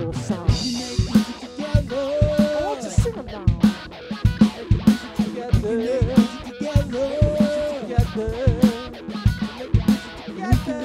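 Rock music: a white Epiphone electric guitar playing over a steady drum-kit beat, with bending, held notes in the middle range.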